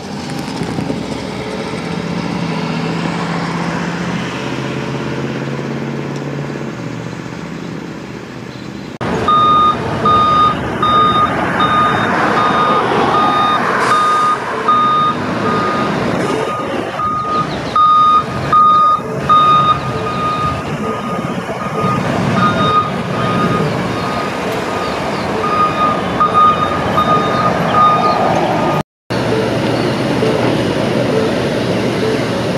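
Vehicle engine and road noise while driving along, then after a sudden cut a truck's reversing alarm beeping over and over amid street noise.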